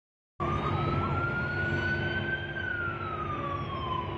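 Emergency vehicle siren wailing over street noise: one slow rise in pitch to a peak about halfway through, then a slow fall. The sound cuts in abruptly just after the start.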